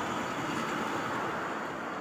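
Steady hiss and rumble of street traffic, even and unbroken.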